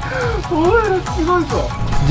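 Drawn-out wordless voices, rising and falling in pitch, over steady background music.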